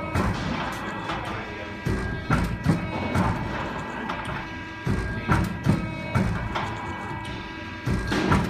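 Traveling-head hydraulic die-cutting press stamping sheet material on its conveyor belt: sets of three or four sharp thumps about every three seconds, over a steady machine hum.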